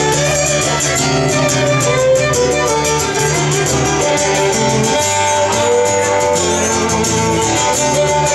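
Live fiddle and strummed acoustic guitar playing an instrumental passage: the fiddle carries a melody of held and moving notes over steady guitar strumming.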